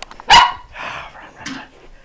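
A dog barks once, loud and sharp, about a third of a second in, followed by a couple of fainter short sounds.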